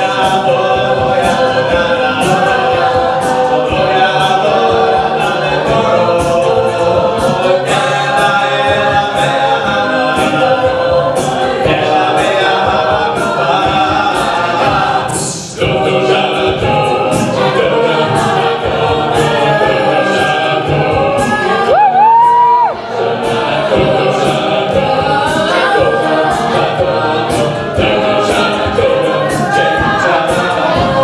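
Mixed-voice a cappella group singing a Hebrew song in harmony over a steady beat of vocal percussion. About halfway through, the sound breaks off briefly as the medley moves into the next song. A little past two-thirds of the way, a single voice slides up to a high, held note.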